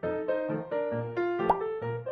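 Background piano music in quick, evenly struck keyboard notes. About one and a half seconds in, a short pop sound effect with a quick upward glide in pitch sounds over it.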